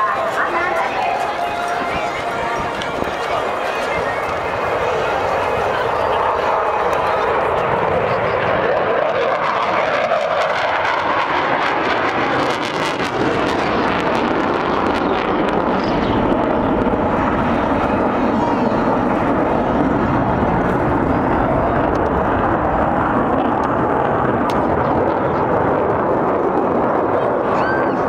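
Jet aircraft engine noise from a military jet flying a display over the airfield, a steady rushing sound that grows louder and deeper from about halfway through as the jet comes nearer.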